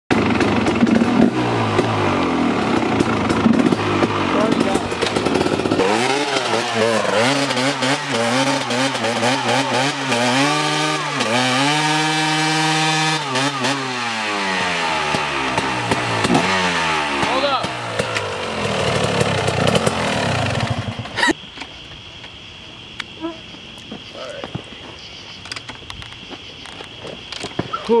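KTM 250 SX two-stroke dirt bike engine revved hard during a rear-wheel burnout on pavement. Its pitch climbs, holds high and falls again near the middle. About 21 s in the sound drops suddenly to a much quieter level.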